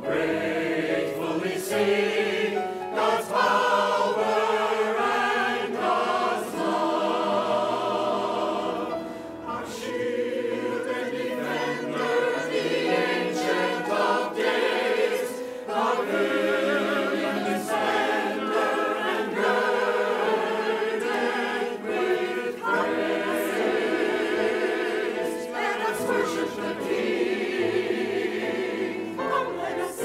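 A mixed church choir of men and women singing an anthem, with wavering vibrato on the held notes and a brief breath between phrases about nine seconds in.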